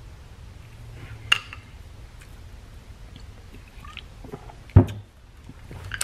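Metal hand tools being handled: a sharp click a little over a second in, a few light ticks, then a louder knock near the end, over a faint steady low hum.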